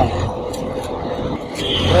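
Steady outdoor noise with a low motor-vehicle engine hum that grows louder near the end, and a man's voice briefly just before the end.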